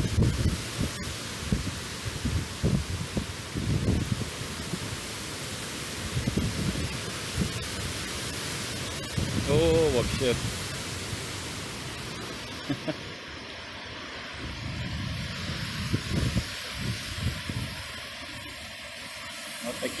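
Tropical cyclone wind rushing through trees and buffeting the microphone: a steady hiss with irregular low gusty surges, easing off after about twelve seconds.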